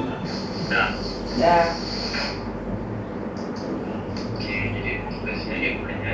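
A woman's voice coming thin and tinny through a phone's speaker on a video call, over a steady low hum, with a high hiss for the first two seconds or so.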